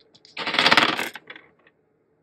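Three twelve-sided astrology dice tossed from a hand onto a tabletop, clattering as they land and roll about half a second in, then settling with a few last clicks.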